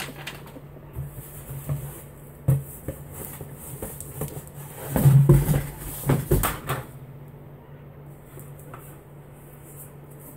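Packaging handling noise: cardboard and paper rustling with a few knocks and thumps as a large food can is lifted out of a shipping box. The loudest burst comes about five seconds in and lasts a second or so, over a steady low hum.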